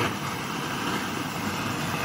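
Gas blowtorch flame burning with a steady rushing noise as it heats a copper sheet.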